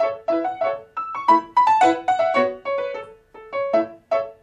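Grand piano playing a passage of short, separate notes and chords, about three a second, with a brief break a little after three seconds in.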